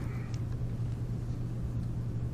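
Steady low hum of room background noise with no speech, unchanging in pitch and level.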